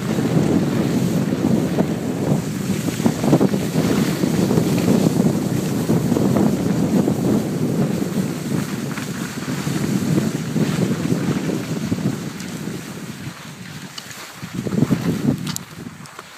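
Wind rushing and buffeting over a handheld phone's microphone during a downhill ski run, a rough, fluctuating rumble. It eases off late on, surges once more shortly before the end, then drops away.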